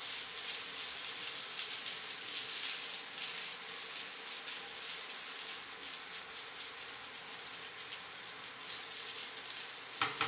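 Fried rice sizzling in a nonstick frying pan as it is stirred with a silicone spatula: a steady frying hiss with fine crackles throughout.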